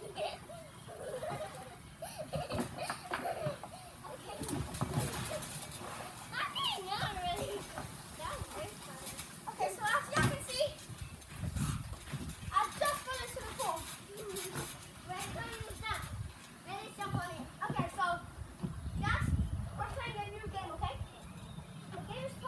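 Children's voices calling out and squealing at play, with low thumps from bouncing on a trampoline mat scattered through.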